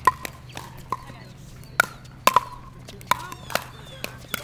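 Pickleball rally: paddles hitting a hollow plastic pickleball, a run of sharp pocks, about ten in four seconds at uneven spacing, some loud and some faint.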